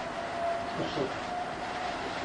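A pause in speech filled with steady background noise: an even hiss with a faint steady tone.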